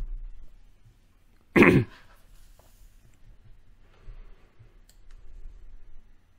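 A single short, loud cough from the reciter about one and a half seconds in, in a quiet small room, with a faint click near the end.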